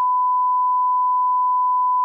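A single steady electronic beep: one pure tone held without any change in pitch or loudness.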